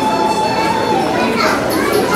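Children's voices chattering in a large hall, with a held tone that fades about a second in.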